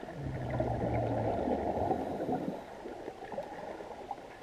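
A burst of underwater bubbling with a low rumble, about two and a half seconds long, from a diver exhaling through a hookah regulator, over faint steady gurgling.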